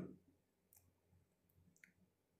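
Near silence, with two faint clicks about a second apart from steel parts of a tractor differential case being handled as the star gears are seated.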